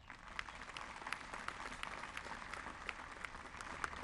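Seated audience applauding, a soft, steady clapping of many hands.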